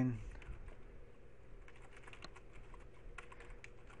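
Typing on a computer keyboard: quiet, irregular key clicks as code is entered.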